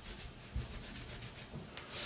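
Palms rolling wet, soapy wool back and forth on a terry-cloth towel, a soft repeated rubbing: a wool cord being wet-felted. Near the end the rubbing stops and a brief sharper noise comes as the cord is lifted off the towel.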